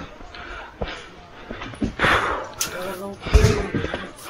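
Indistinct voices of people talking nearby, with a few low thumps, the loudest about three and a half seconds in.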